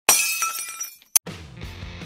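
A loud shattering crash that rings down over about a second, a short sharp hit, then intro music with a steady beat starts.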